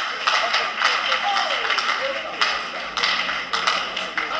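Voices with scattered, irregular hand claps.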